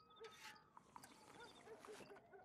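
Near silence: faint background ambience.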